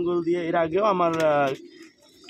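Pigeon cooing: one long, low coo that lasts about a second and a half and then stops.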